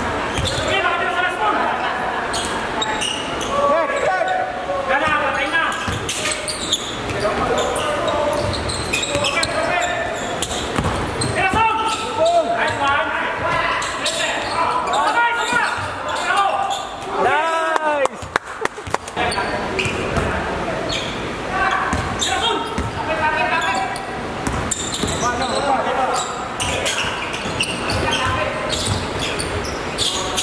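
A basketball bouncing and being dribbled on an indoor court, with players shouting and calling to each other throughout, echoing in a large hall.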